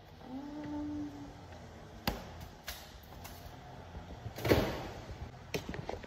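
Refrigerator being handled: a few sharp clicks and knocks, with a louder, heavier thump about four and a half seconds in as a door is shut.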